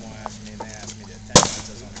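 Outboard motor of a small workboat running steadily as a low hum under faint voices, with one sharp knock about one and a half seconds in.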